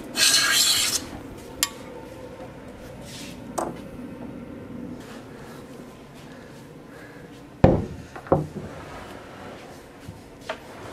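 A hand plane takes a rasping stroke along the edge of a curly pecan slab in the first second, followed by a click and a light knock. Near the end come two heavy wooden knocks, the loudest sounds here, as the big slab is moved and bumped down on the workbench.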